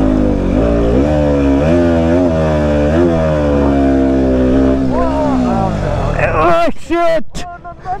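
KTM Duke 125's single-cylinder four-stroke engine running at low revs over a rocky track, its pitch rising and falling with the throttle. It cuts out about six seconds in as the bike tips over, and a voice shouts near the end.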